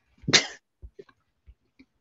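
A person coughing once, short and sharp, then a few faint clicks.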